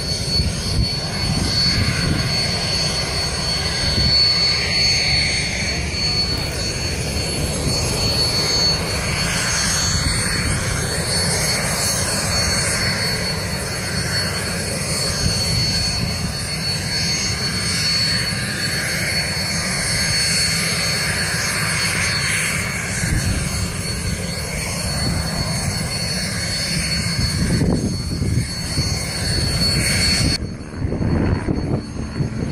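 Firefighting aircraft engines, a steady drone from the water-bombing planes and helicopters working over the fire, with wind rumbling on the microphone.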